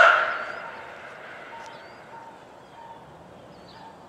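The last words of a Whelen WPS-3016 siren's recorded test announcement ring out across the area and die away within about half a second. What follows is a quiet outdoor background with a few faint bird chirps.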